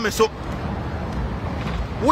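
A man's voice breaks off just after the start. A steady low rumble of city street noise follows, with no distinct events in it.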